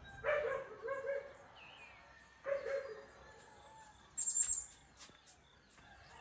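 A dog barking in two short bouts, a few barks just after the start and more about two and a half seconds in, with birds chirping. A sharp, high bird call about four seconds in is the loudest sound.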